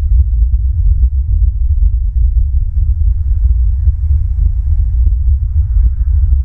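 Loud, steady low rumble of wind buffeting an outdoor camera microphone, with many faint scattered ticks over it.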